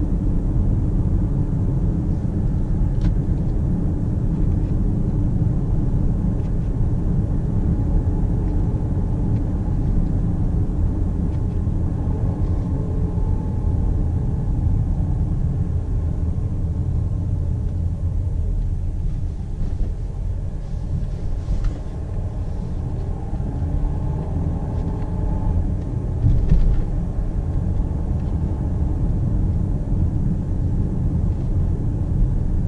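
Interior cabin noise of a Volvo XC90 D5 on the move: a steady low rumble of tyres and its four-cylinder twin-turbo diesel at cruising speed. The rumble eases a little past the middle and briefly swells near the end.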